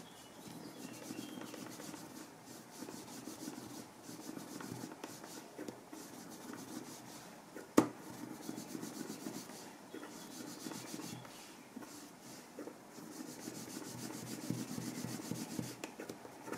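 Wooden edge slicker rubbed back and forth along a waxed leather edge in repeated strokes, burnishing the melted wax down into the edge so that it becomes dense and polished. A single sharp click stands out about halfway through.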